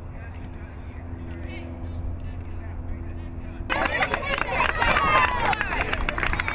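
Steady low outdoor rumble with faint distant voices, then, about two-thirds of the way in, many children shouting and chattering at once starts suddenly and loudly.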